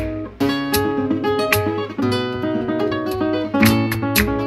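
Solo flamenco guitar with a capo playing a soleá falseta: picked single-note phrases over a steady bass, broken by a few sharp strummed chords about half a second in, at about one and a half seconds, and near the end.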